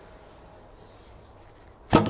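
35-pound Mandarin Duck Phantom recurve bow shot: a single sharp snap of the string on release near the end, with a short ring dying away after it. Before it there is only faint background while the bow is drawn.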